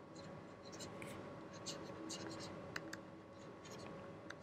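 Faint scratching of a stylus writing on a tablet: short, quick strokes coming in little clusters, over a faint steady hum.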